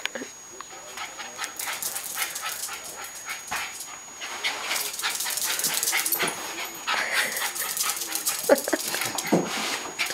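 Freshly bathed Cairn terrier scrambling about: a rapid, thickening run of scuffs, clicks and rubbing noises that grows louder, with a few short vocal sounds from the dog near the end.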